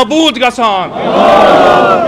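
A man's voice, amplified through a microphone, calls out a slogan. About a second in, a crowd of men answers by shouting the response together in one loud, drawn-out chant.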